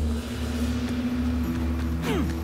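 A steady low rumble under a single held low note, joined by a second, higher held note about one and a half seconds in: a droning soundtrack bed during a scene transition.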